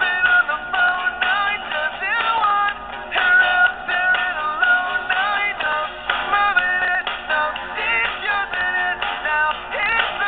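A song playing, with a sung lead vocal melody of held notes that step between pitches over the backing music.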